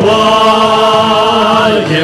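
Worship team and congregation singing a Chinese worship song with band accompaniment, holding one long note with a wavering pitch. The note breaks off near the end as the next phrase begins.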